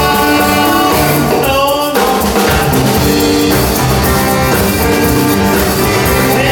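Live band playing an upbeat rock-and-roll number, with singing over guitars, fiddle and drum kit; a brief break in the music comes about two seconds in.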